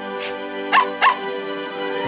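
A cartoon puppy barking twice in quick succession, two short yips, over steady background music.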